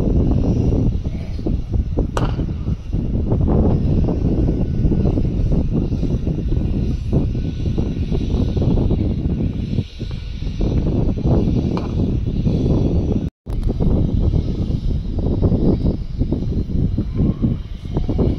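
Loud, steady, low rumbling noise of wind buffeting the microphone outdoors, with a few faint short knocks. The sound cuts out for an instant about thirteen seconds in.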